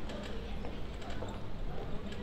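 Footsteps on pavement of people walking through a busy passage, with a murmur of passers-by talking over a steady low city rumble.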